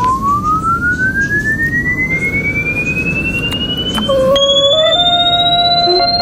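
Experimental electronic music: a single pure synthesizer tone glides slowly and steadily upward in pitch, like a slow siren, over a pulsing low rumble. About four seconds in, held electronic notes enter beneath it and shift pitch in steps.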